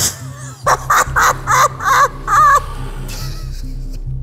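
A burst of laughter: about six short, high-pitched 'ha' pulses over roughly two seconds, over a steady background music bed.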